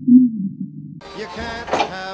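Heavily muffled sound with only its low end left and a wandering, voice-like pitch, like sound heard by someone hard of hearing. About a second in, the full clear sound cuts back in with music.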